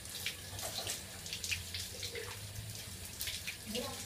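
Water running from a hose over hands being rinsed, with irregular small splashes as it falls onto a tiled floor.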